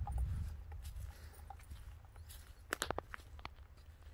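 Dry leaf litter crackling underfoot, a short cluster of sharp crunches about three seconds in, over a low rumble of wind on the microphone.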